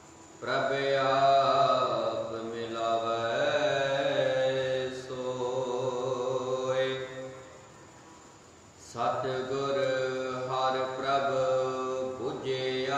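A man's voice chanting a recitation of Sikh scripture (Gurbani path) in a drawn-out, sing-song cadence. The phrases start about half a second in and pause for about a second and a half in the middle.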